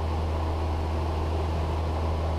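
Cessna 172's piston engine and propeller running steadily in flight, heard from inside the cabin as an even, low drone.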